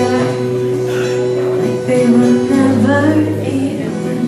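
Live acoustic pop song: an acoustic guitar playing held chords under a woman singing into a microphone, easing slightly in level near the end.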